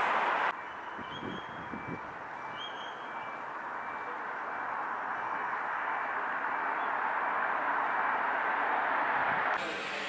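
Steady rush of road traffic, slowly growing louder over several seconds, with a faint high whistle and two brief high chirps in the first few seconds.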